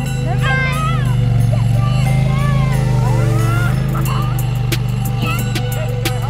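Polaris Sportsman ATV engine running steadily as it tows a sled of children through snow, with children's shouting calls over it. Music with a ticking beat comes in about four seconds in.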